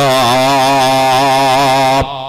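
A man's amplified voice holding one long chanted note with a wavering pitch, breaking off at the end into a short hall echo.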